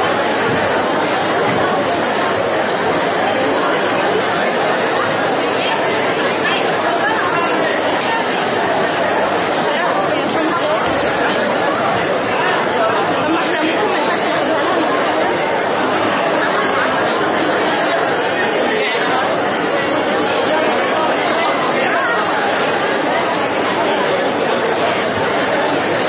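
Steady chatter of many voices talking at once in a lecture room.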